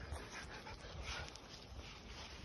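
A dog standing close by, panting faintly.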